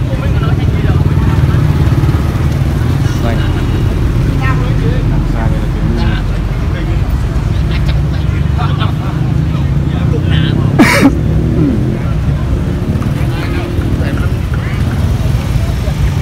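Busy street ambience: a steady low rumble with people talking in the background, and one sharp click about eleven seconds in.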